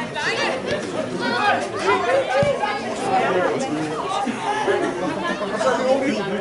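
Several voices talking and calling out over one another in a continuous babble of chatter, with no single voice clear.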